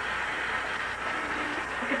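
Bathroom sink faucet running, water pouring over hair into the basin with a steady rush.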